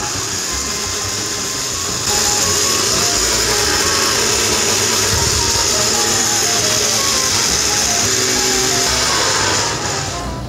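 Electric blender running, puréeing mango and mint into a chutney. It starts at once, gets louder about two seconds in as it steps up in speed, and stops just before the end.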